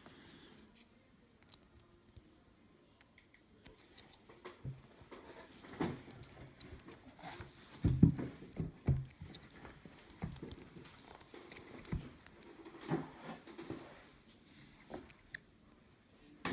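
Faint, irregular clicks and scrapes from the number wheels of a Defcon CL combination computer lock being turned and probed with a thin metal pick, as the wheels are felt for their gates to decode the combination. A cluster of louder knocks comes about eight seconds in.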